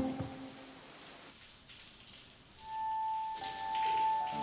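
Background music stops just after the start; after a quieter stretch, a single long high note of music enters more than halfway through, joined near the end by the hiss of a running shower spraying water.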